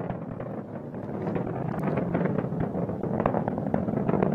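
Atlas V rocket in powered ascent, its RD-180 main engine and two solid rocket boosters firing and heard as a steady low rumbling roar with crackle. The vehicle is throttled down through max Q, the point of maximum dynamic pressure.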